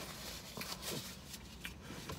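Faint rustling and crinkling of a paper napkin as hands are wiped clean.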